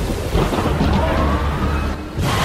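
Deep thunder rumbling over a steady hiss of rain, as a soundtrack effect, with a faint tone gliding upward about halfway through.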